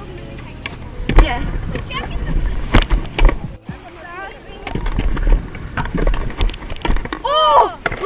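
Stunt-scooter wheels rolling over a concrete skate-park bowl with a rumble and several sharp knocks. A rising-and-falling whoop comes near the end.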